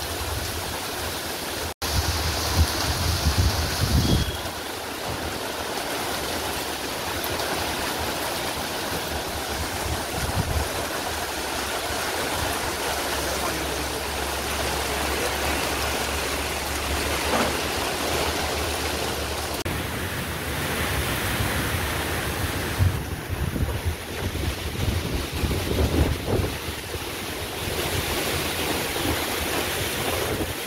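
Torrential rain falling steadily, with gusty wind buffeting the microphone in a low rumble that rises and falls.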